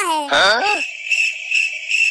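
A cartoon voice slides down in pitch, then a high, steady jingling sound effect rings for over a second.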